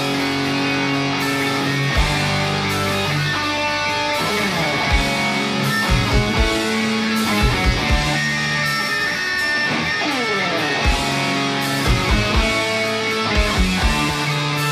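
A doom heavy metal band playing live: electric guitars holding long notes over bass and drums, with heavy low hits every second or so.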